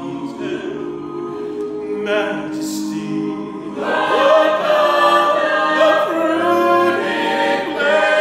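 A mixed a cappella vocal ensemble singing in harmony. The singing is softer at first, then grows louder about four seconds in as the full group comes in together.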